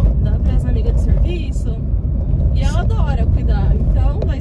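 Steady low rumble of a car's engine and tyres on the road, heard from inside the moving car's cabin, with conversation over it.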